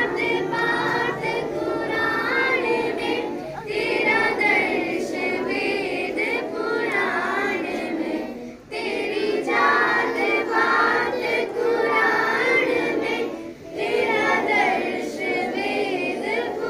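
A group of schoolchildren singing a song together, in sung phrases broken by short pauses about every five seconds.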